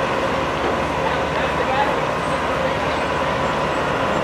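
Steady rushing background noise with indistinct voices murmuring in it; no single sound stands out.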